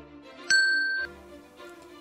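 A bright electronic bell ding about half a second in, lasting about half a second and cut off sharply: the notification-bell sound effect of an animated subscribe button, over quiet background music.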